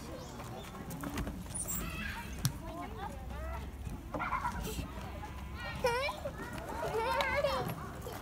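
Young children's voices at play: scattered chatter and high-pitched squeals, the loudest about six seconds in and again near the end, over a low rumble.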